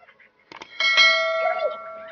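A short mouse-click sound followed by a bright bell ding that rings on and fades over about a second and a half: the sound effect of a YouTube subscribe-button animation.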